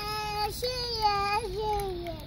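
A young child's voice singing in long held notes: a short note, then a longer one that wavers about midway and slides down near the end.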